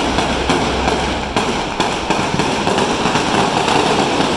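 Many firecrackers going off in a dense, continuous crackle of rapid, irregular bangs.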